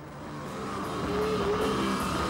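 Stoner rock band playing live: heavy distorted electric guitar, bass and drum kit, growing steadily louder over the first second and a half, then holding.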